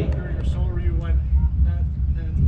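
A steady low rumble with faint, indistinct talking and a few light clicks; no music is being played.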